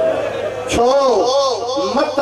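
A man's voice reciting through a microphone and loudspeaker in a drawn-out, chanted delivery, its pitch rising and falling in long arcs.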